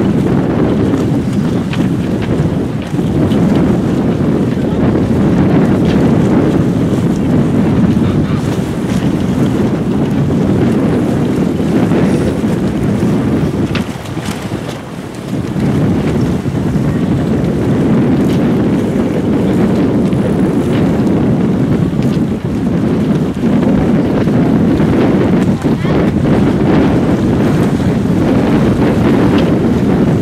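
Wind blowing across the camera microphone: a loud, steady, low rush that eases briefly about fourteen seconds in.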